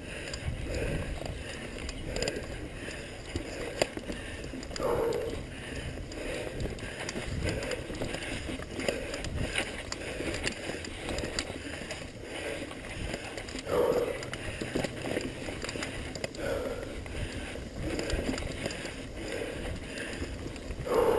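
Mountain bike ridden fast over a dirt forest singletrack, heard from a handlebar-mounted camera: a continuous rumble and rattle of the tyres, frame and mount over the rough ground, with sharp knocks now and then as it hits roots and bumps.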